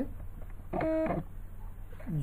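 A brief hummed 'mm' from a man's voice, about half a second long and held on one pitch before dropping off, about a second in, over a low steady background hum.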